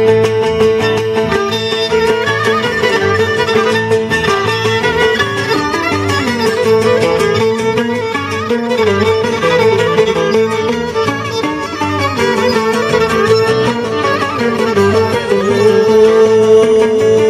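Cretan traditional ensemble playing an instrumental passage: a violin carries the melody over two laoutos strummed in rhythm and a bass keeping a steady beat.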